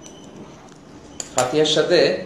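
A man's voice starts speaking about one and a half seconds in, just after a sharp click; before that there is only low room noise with a few faint clicks.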